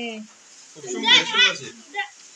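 Voices only: a short high-pitched child's voice calling out about a second in, with other voices around it.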